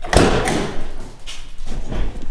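Door of a 1978 Datsun 280Z being opened by its push-button handle: two sharp knocks from the latch and door in the first half second, then further thuds as someone climbs into the seat.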